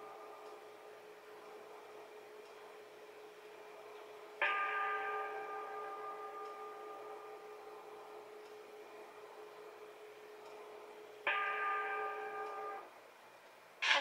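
Buddhist bowl bell (qing) struck twice, about seven seconds apart. Each strike rings with several overtones and slowly fades, and the second cuts off after about a second and a half. It is heard through a television speaker, with a faint ringing tone already sounding before the first strike.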